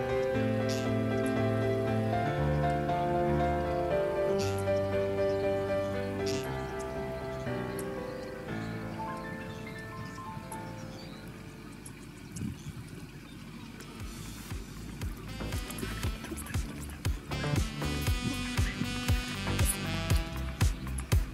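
Background music: a slow piece of held chords fades out about halfway through, and a new track with a steady beat begins a few seconds later.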